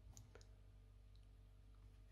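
Near silence with a few faint, short clicks in the first half second and one near the middle: a plastic stitch marker being handled on a crochet piece.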